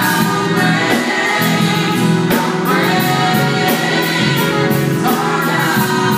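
Live gospel music: a lead singer with a backing choir over a band, with a steady drum beat.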